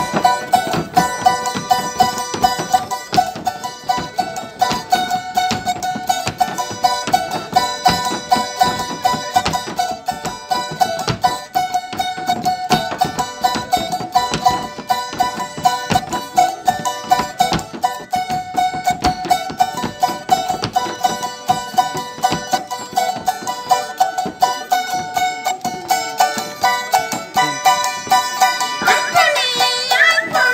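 Acoustic guitars strummed and picked in a lively Andean folk tune. Near the end a woman's voice starts to sing over them through a microphone.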